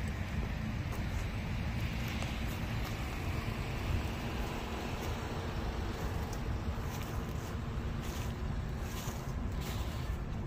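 1957 Chevrolet Bel Air's fuel-injected V8 idling steadily with a low rumble, with some wind on the microphone.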